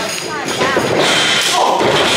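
Thud of a wrestler's body hitting the canvas and boards of a wrestling ring, with shouts from the crowd in the hall.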